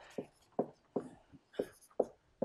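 Dry-erase marker writing on a whiteboard: a run of short, sharp strokes, about two or three a second.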